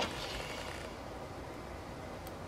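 Quiet room tone: a steady faint hiss with no distinct sound events.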